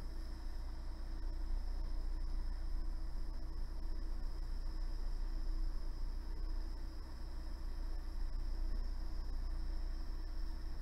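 Jeweller's soldering torch flame, a steady hiss with a low rumble, held on small wire pieces to sweat solder onto them.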